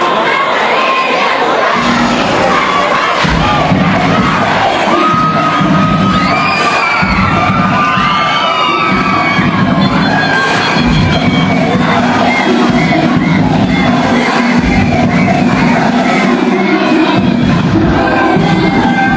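A crowd cheering and shouting, with many high-pitched yells, over dance music whose low beat comes in about two seconds in.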